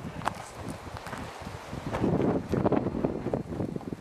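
Several hikers' footsteps crunching irregularly on a dirt and rocky trail, with wind on the microphone.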